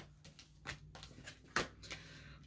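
A deck of oracle cards shuffled by hand: a few soft card slaps and rustles, the loudest about a second and a half in.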